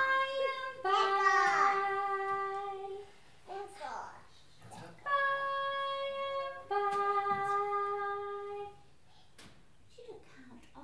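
Voices in a music class singing long held notes without words: a lower note, a higher one, then the lower note again. Children's voices slide up and down around the first note.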